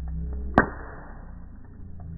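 Bonfire sound slowed down by slow-motion playback, heard as a deep, muffled rumble of burning wood. About half a second in, one sharp crack rings out and fades.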